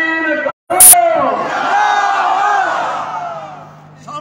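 A man shouting a long, drawn-out slogan over a public-address loudspeaker, answered by a crowd shouting back together. A sharp click comes just under a second in, and the crowd's shout fades away near the end.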